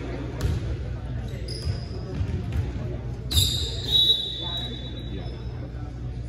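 A volleyball bouncing on a gym floor a few times, over the chatter of players and spectators. A louder hit comes about three seconds in, followed by a high, steady squeal lasting about a second.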